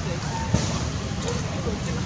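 Steady low background rumble with faint, indistinct voices, and a single sharp knock about half a second in.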